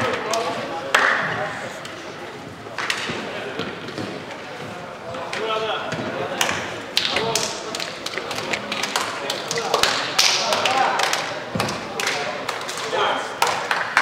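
Voices of players and spectators in a floorball hall, with scattered sharp taps and knocks from plastic floorball sticks and ball on the court floor.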